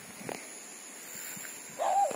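Near the end, an animal gives a high, wavering whine that rises and falls quickly several times. Under it runs a steady, high-pitched insect drone.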